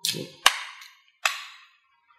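A canned soft drink being opened by its pull tab: a hissy burst, a sharp crack about half a second in, then another hissing burst that fades just over a second in.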